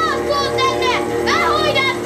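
Film soundtrack played back: music holding steady sustained notes, with high voices calling out over it.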